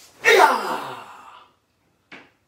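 A man's loud karate kiai shout, starting sharply and trailing off with falling pitch over about a second.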